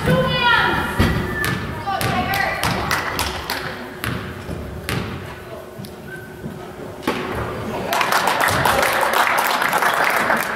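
A basketball is bounced on a hardwood gym floor, about once a second with pauses, over crowd voices. About eight seconds in, the crowd breaks into cheering as the free throw goes in.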